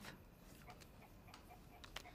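Near silence: quiet room tone with a few faint, irregularly spaced ticks.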